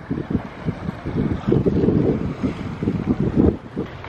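Wind buffeting the camera microphone in irregular gusts, a loud low rumble.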